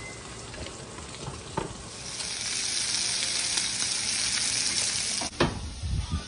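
Bacon sizzling in a frying pan. The sizzle grows louder about two seconds in and drops back a few seconds later with a short knock.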